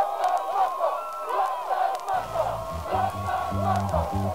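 A crowd of many voices shouting and cheering, the track's intro, with a low bass line coming in about halfway through.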